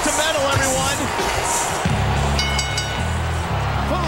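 A wrestler's entrance music starts about two seconds in with a heavy, driving bass riff, over a cheering, whooping arena crowd.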